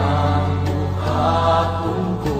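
Christian song: a voice holds a long sung note over a steady low bass note.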